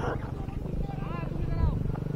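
Raised, drawn-out calls from voices across the field, rising and falling in pitch about a second in, over a steady low rumble.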